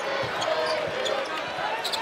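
Arena crowd noise with a basketball being dribbled on a hardwood court, a few dull bounces under the steady hum of the crowd.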